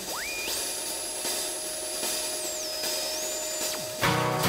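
Electronic synthesizer tone: a single pure whistle sweeps up to a very high pitch and holds, dips, rises a little, then falls steeply just before the end. Under it are a steady lower tone and a hiss.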